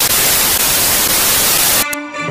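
Loud analog television static: an even white-noise hiss that cuts off suddenly near the end, used as a glitch transition sound effect.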